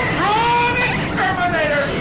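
A raised, high-pitched voice from a film soundtrack, rising and falling in pitch, over a steady noisy background.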